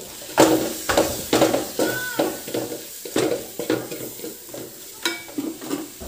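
Wooden spatula stirring and scraping onions, green chillies and chilli powder around an aluminium pot in irregular strokes about twice a second, over the sizzle of the masala frying.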